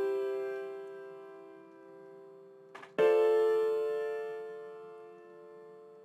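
Piano chords from an FL Studio virtual instrument, played one at a time as part of an A-minor chord progression. One chord is already ringing and fading, and a second chord is struck about three seconds in and left to ring out, fading slowly.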